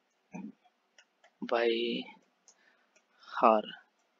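A few faint, scattered computer keyboard keystrokes as an expression is typed.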